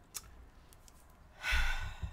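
A woman's audible sigh-like breath, a short breathy rush lasting about half a second, coming near the end after a quiet pause broken by a faint click.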